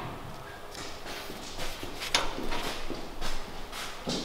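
A series of light, irregular knocks and taps, about two a second.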